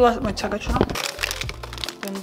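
A stiff, frozen plastic food bag crinkling and crackling as it is handled in a freezer, with many quick, irregular crackles.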